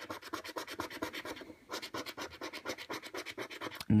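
Scratching the latex coating off a lottery scratchcard in rapid short strokes, about ten a second, with a brief pause about one and a half seconds in.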